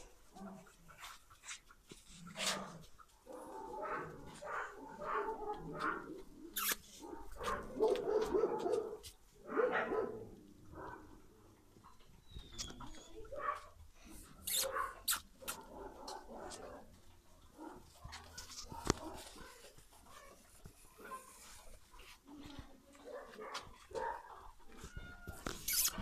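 Dogs making short, irregular vocal sounds, with scattered sharp clicks and rustles.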